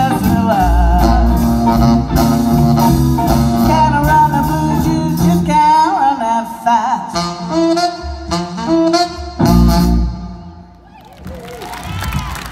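Live blues band (saxophone, electric guitars, bass and drums) playing the closing bars of a song. It ends on a loud final hit about nine and a half seconds in that rings out, and clapping begins near the end.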